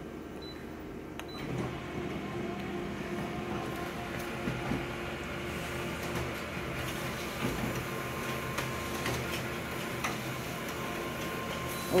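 Office colour copier running a two-copy print job. Its feed motors and rollers start up about a second in and run steadily as the sheets are fed out into the output tray.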